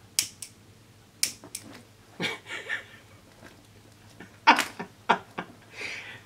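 A handheld lighter clicked several times in quick succession, then a man's short bursts of laughter, about four in a row, from about four and a half seconds in.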